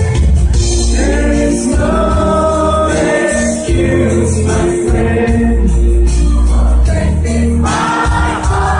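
Live band music with singing over a heavy bass line and drums, loud and continuous.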